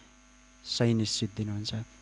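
Steady electrical mains hum from a microphone and amplifier system, heard alone for the first third of a second or so. A man's voice through the microphone then comes in over it.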